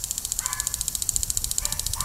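Lawn sprinkler spraying water, with a rapid, even ticking of the spray, about ten strokes a second.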